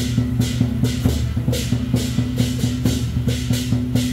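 Temple-procession percussion playing a steady beat, with drums and crashing cymbals. Cymbal crashes come about two to three times a second over quicker drum strokes, and a steady low tone is held underneath.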